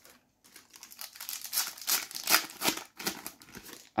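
Foil wrapper of a Panini FIFA 365 Adrenalyn XL trading-card packet being torn open and crinkled. A run of irregular crackles starts about half a second in.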